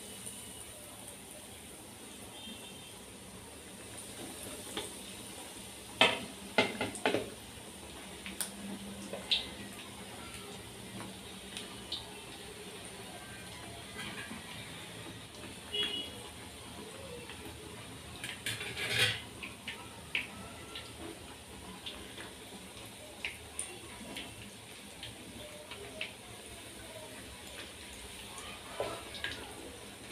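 Breaded chicken drumsticks deep-frying in hot oil in an aluminium kadai: a steady, fairly quiet sizzle. A few knocks and clinks against the pan break through it, the loudest about six and nineteen seconds in.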